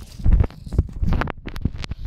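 A hand handling the phone right at its microphone: a string of close, muffled knocks and rubs, loudest about a third of a second in.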